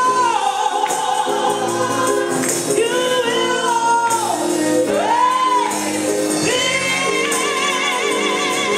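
Gospel choir singing with organ and tambourine: voices hold long notes with vibrato and glide between pitches over sustained organ chords, with the tambourine shaking through it.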